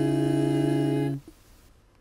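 Five-voice a cappella group holding the final chord of its medley: several voices sustain steady notes together, with a low bass note under close upper parts, then release together just over a second in, leaving a brief faint trace.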